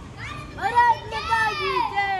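A child's high-pitched excited vocalising: several calls in a row without clear words, each rising and falling in pitch.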